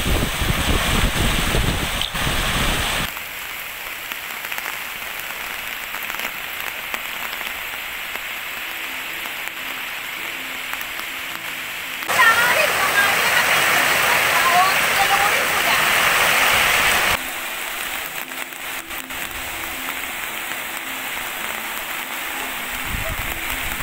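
Heavy rain falling steadily, a continuous hiss that jumps abruptly in level about three, twelve and seventeen seconds in. It is loudest and brightest in the stretch from about twelve to seventeen seconds.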